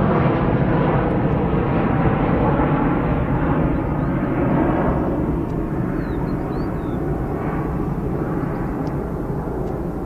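An Airbus A320's two jet engines at takeoff power during the climb-out: a broad, steady rumble that slowly fades and loses its higher tones as the aircraft draws away.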